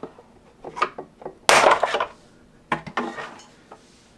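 Plastic back panel of a SentrySafe door being pulled off: its retaining clips snapping loose and hard plastic clattering against the door, a few sharp clicks with the loudest snap and scrape about a second and a half in.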